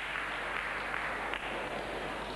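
Arena crowd applauding steadily after a stuck vault landing.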